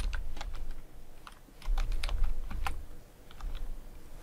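Computer keyboard keystrokes: a name typed in short, irregular runs of clicks, with a dull low thud under the louder runs.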